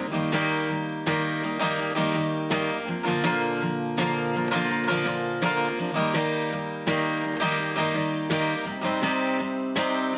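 Acoustic guitar with a capo, chords strummed in a steady rhythm, with chord changes about three and six seconds in.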